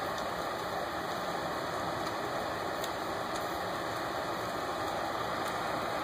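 Steady hum and hiss of a large auditorium after the band has stopped playing, with a few faint clicks.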